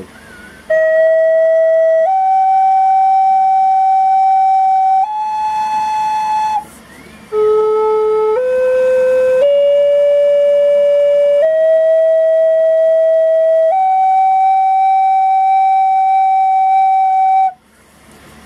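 Native American flute played one held note at a time to check its tuning: three rising notes starting about a second in, the third softer and breathier, then after a short break a five-note scale climbing from the lowest note to the top, the last note held for about four seconds. It is a tuning check of the freshly burned finger holes on a flute being tuned to A=432 Hz.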